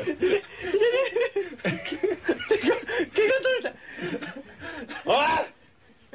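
Men laughing hard in repeated bursts of chuckling and snickering, with a few words mixed in; the laughter dies down near the end.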